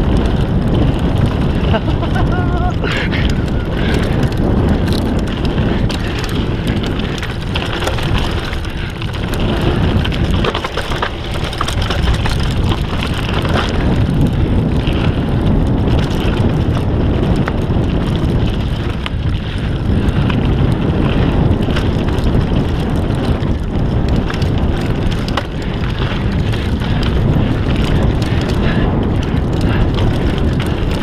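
Wind buffeting the camera microphone and mountain-bike tyres rumbling over a dry dirt trail at speed, with the bike clattering and knocking as it hits bumps and roots on a steep descent. The noise is loud and continuous and eases briefly a few times.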